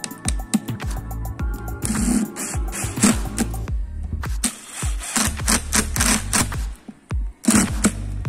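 Cordless impact driver hammering screws into a wooden wedge in several short rattling bursts, over background music.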